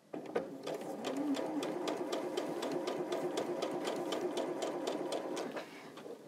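Electric domestic sewing machine stitching a quarter-inch seam through small patchwork squares. It runs steadily with a quick, even tick of needle strokes, then stops shortly before the end.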